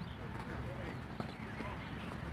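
Distant, overlapping voices of a group of people on an open field, with a few scattered sharp knocks and footfalls from runners over a steady low rumble.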